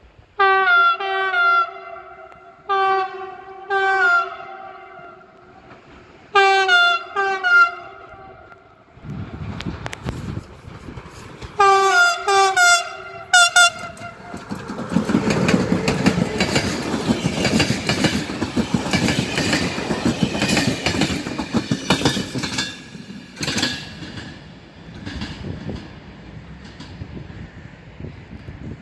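Siemens Vectron electric locomotive sounding a string of short horn toots in quick groups as a greeting. Then the locomotive and its passenger coaches pass close, wheels clattering over the rail joints and points, the clatter fading as the train moves away.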